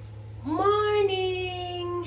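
A woman's voice rising, then holding one long, high, drawn-out note for about a second and a half. A steady low hum runs underneath.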